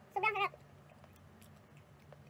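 A short, high-pitched vocal call with a wavering pitch, under half a second long, right at the start, followed by quiet room tone with a faint steady low hum.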